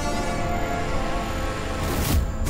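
Dramatic background score: a tense chord of many steady tones held throughout, closing with a sudden loud hit near the end.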